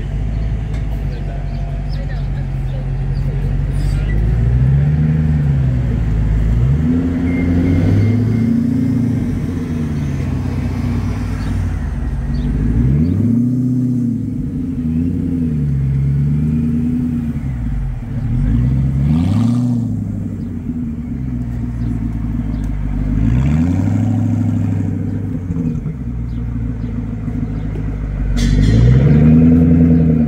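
First-generation Ford GT's supercharged 5.4-litre V8 at low speed, revved in repeated short throttle blips, so its pitch rises and falls every second or two as the car creeps along. The strongest rev comes near the end.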